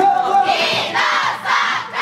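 Several voices shouting together in rhythm, four loud shouts about half a second apart, as a pop song's backing music drops back.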